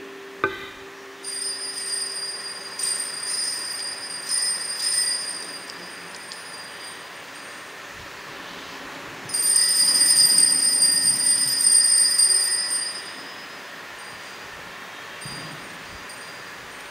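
Altar bells rung at the elevation of the consecrated host, marking the consecration: two long bouts of high ringing, the first starting about a second in and lasting some five seconds, the second starting a little after the middle and lasting about four seconds.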